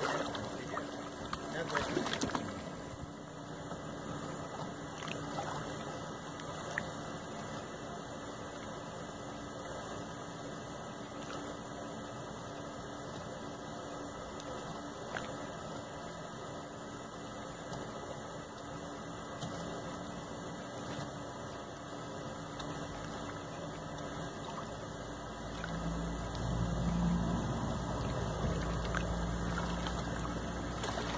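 Shallow lake water lapping and trickling in the shallows, with a low rumble coming in near the end.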